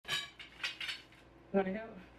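Metal grow-tent poles clinking against each other as a bundle of them is handled, with a brief hum-like vocal sound near the end.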